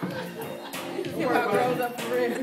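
Background chatter of several people in a large room, with music playing faintly underneath.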